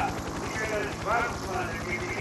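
Broadcast sound of a voice talking faintly, over a low, fast, steady throb.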